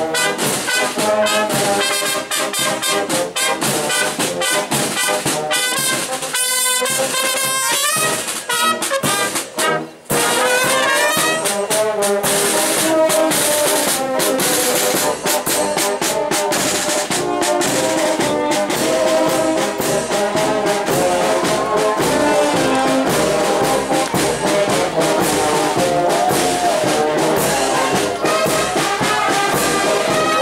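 Brass band of trumpets, tubas and horns playing; the music breaks off briefly about ten seconds in and brass music resumes.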